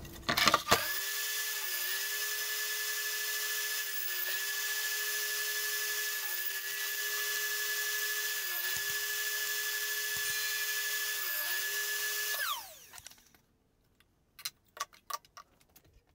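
Metabo TS 254 table saw motor running steadily with a high whine, its pitch sagging slightly every couple of seconds. About twelve seconds in it is switched off, and the pitch drops quickly as it winds down. A few light clicks follow.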